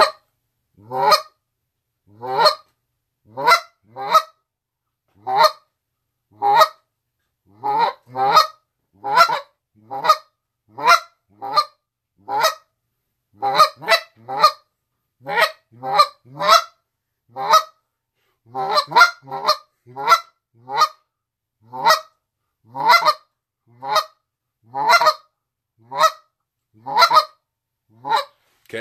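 A Next Gen Canada goose call blown in a steady series of single clucks, a little more than one a second with an occasional quick pair. The clucks are short and sharp with clean gaps between them, a slowed-down, even cadence meant to copy a live Canada goose rather than a caller's rushed 'human rhythm'.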